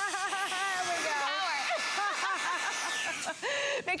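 Shark WandVac cordless handheld vacuum's high-speed brushless motor running for about three seconds with a steady high whine and rush of air, then switched off. Voices talk over it.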